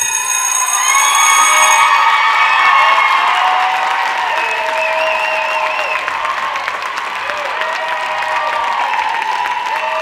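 Audience cheering, shouting and applauding at the end of a dance routine, with many high voices over the clapping. It is loudest a second or two in, then eases slightly.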